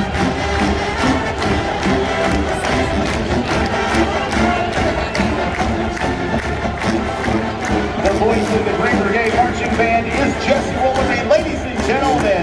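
Marching band playing, brass and drums together over a steady beat, with stadium crowd noise and cheering beneath.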